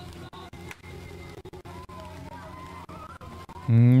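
Portable fire pump engine idling steadily, then near the end suddenly revved hard, its pitch climbing sharply as the throttle is opened for the fire attack.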